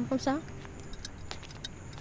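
A metal spoon clinking against a drinking glass as milk is stirred in it: a run of light, irregular tings starting about half a second in.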